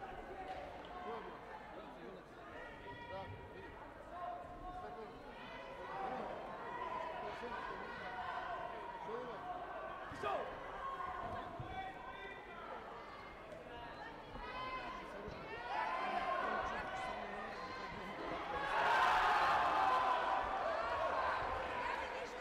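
Taekwondo bout in a sports hall: background voices with occasional sharp thuds of kicks and feet on the foam mats and body protectors. A louder burst of voices comes about nineteen seconds in.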